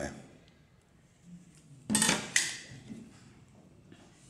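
A thin metal plate clattering as it is handled: two quick metallic knocks about two seconds in, with a little rattle after.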